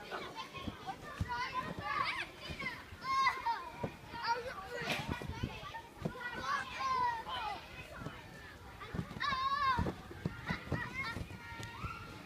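Children playing: fairly faint shouts, calls and high squeals from several kids, with a few soft thumps between them.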